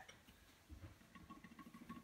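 Near silence: a toy spinning top turning on a glass cooktop, with a faint steady whistling tone in the second half as it winds down.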